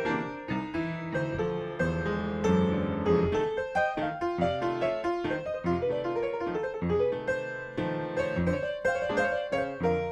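Solo piano playing an instrumental break in New Orleans blues style: a busy two-handed passage of quick notes over a bass line, with no singing.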